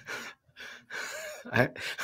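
A man catching his breath after a laughing fit: a few breathy gasps, then he starts to speak near the end.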